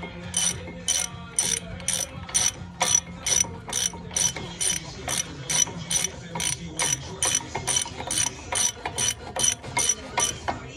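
Hand ratchet wrench clicking as it turns a bolt on a car's front brake caliper, a steady run of sharp clicks about two or three a second.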